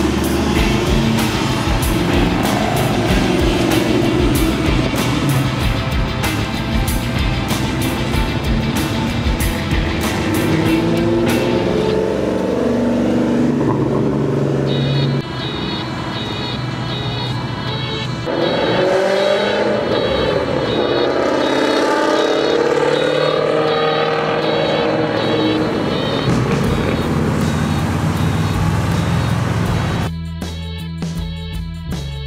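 Car engines accelerating as cars pull away and drive past one after another, the engine note rising and falling as they rev through the gears. The sound changes abruptly twice as one car gives way to the next.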